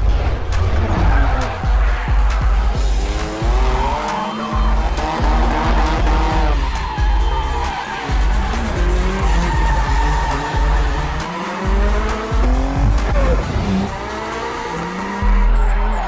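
Race car engines revving up and down with tyres squealing through a drift, mixed over a film score with a heavy pulsing bass.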